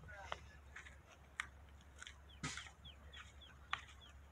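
Faint bird chirps: short, falling calls repeated several times, more often in the second half. A few sharp clicks fall between them.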